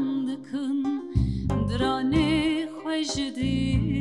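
Live acoustic Kurdish folk music: a woman singing a slow, ornamented melody with wavering notes over a plucked long-necked lute (bağlama), with deep bass notes entering twice.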